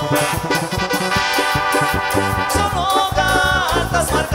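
A tierra caliente band playing live: drums keep a steady beat under electric bass, guitar and a held melody line that wavers in pitch near the end.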